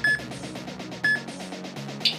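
Background music with a steady beat, over which a workout interval timer gives short, high countdown beeps once a second, two of them here, marking the last seconds of the rest period before the next exercise.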